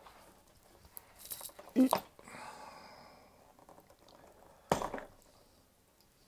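Hard plastic and small metal parts clicking and rattling as a small plastic box of collets is pulled from the fitted tray of a plastic tool case, with two loud knocks, a little under two seconds in and again a little under five seconds in.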